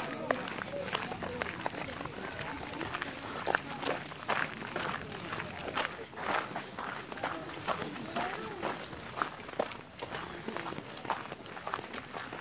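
Footsteps of a person walking outdoors, with indistinct voices of people talking in the background.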